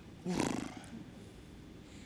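A person's short breathy vocal sound, starting about a quarter second in and fading out within about a second.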